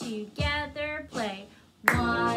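A woman counting the beats aloud while clapping a rhythm, with a sharp hand clap near the end.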